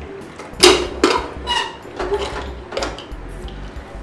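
Aluminium Prestige pressure cooker being opened once its steam is out: a few sharp metal clanks and scrapes as the lid is worked loose, the loudest a little over half a second in, some with a short ring.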